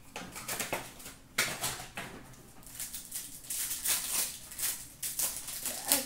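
Plastic and foil wrapping of hockey card packs crinkling and tearing as they are handled and opened, in irregular crackles with a few sharper rips.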